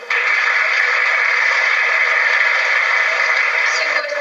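Audience applause, heard thinly through a television speaker: it starts suddenly as the dance music ends and keeps a steady, even level.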